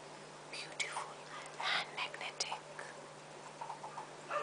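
A woman whispering a few short breathy words, with a couple of sharp clicks, over a steady low hum.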